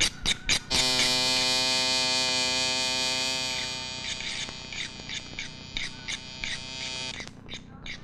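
A few sharp clicks, then about a second in a steady buzzing drone, rich in overtones, that holds and fades away near the end.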